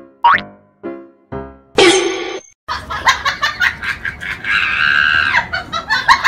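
Playful music laid over the clip, made of short separate notes, with a quick rising cartoon-style boing near the start.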